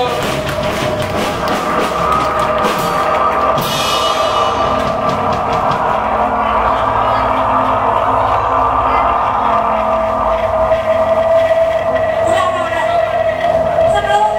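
Electric guitar feedback and amplifier drone held on steady tones as a live rock band lets a song ring out, with drum and cymbal hits in the first few seconds. A voice on the microphone comes in near the end.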